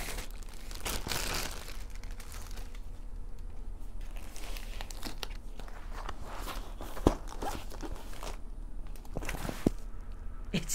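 Plastic film and paper wrapping crinkling and tearing as a rolled canvas is unwrapped by hand, in a string of uneven rustles. A sharp knock comes about seven seconds in and a smaller one near the end.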